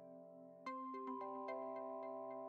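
Soft background music of sustained synth and chime-like tones with light regular note strikes; a louder new chord comes in under a second in.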